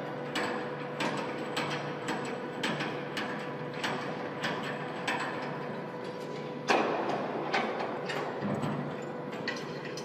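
Workshop assembly noise: scattered metallic clicks, clinks and knocks from hand work on metal parts, over a steady machine hum, with a louder clank about seven seconds in.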